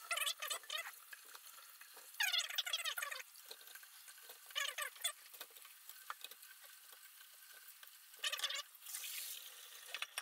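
Metal spoon scraping and knocking in a pot of hot water in short squeaky bursts as boiled eggs are lifted out into a strainer. Near the end comes a hissing splash of the hot water being poured off into the sink.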